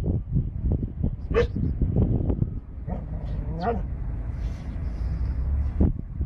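Dog barking a couple of short times, about two seconds apart, over a steady low rumble.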